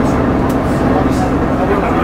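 Leyland Titan double-decker bus's diesel engine running under way, a steady loud drone heard from inside the lower saloon, with two brief clicks.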